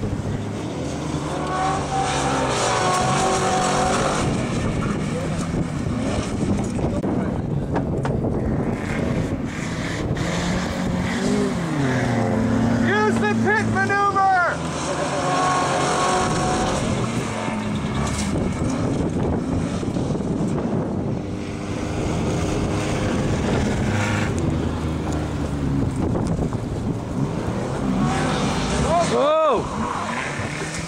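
Ford Crown Victoria Police Interceptor's V8 engine being revved hard as the car is thrashed around a loose dirt field. The engine note climbs and drops over and over as the car accelerates and slides, with a few short high swooping sounds about halfway through and again near the end.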